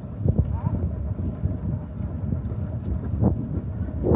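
Bicycle riding along a paved path: wind buffeting the microphone makes a low rumble, with scattered knocks and rattles from the bike.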